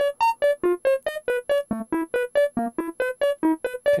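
Doepfer modular synthesizer sequence of short, plucked notes, about five a second, mostly one repeated pitch with occasional lower and higher notes. It runs through the A-188-2 tapped bucket-brigade (BBD) delay, with the 396 tap's positive output just added, giving a little bit of chorusing.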